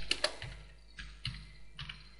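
Computer keyboard being typed on: a handful of quiet, separate keystrokes spread over two seconds.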